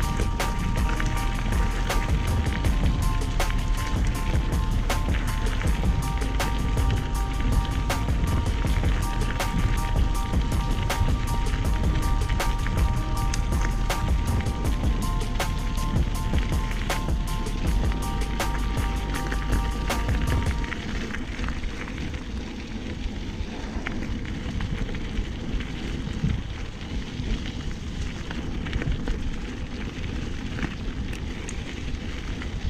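Bicycle tyres rolling over a gravel, leaf-strewn track, with constant rattling and clicking from the bike and wind noise on the microphone. A few steady tones run alongside until about two-thirds of the way through, when the sound becomes quieter.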